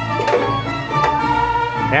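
Mariachi band playing, the violins holding long sustained notes.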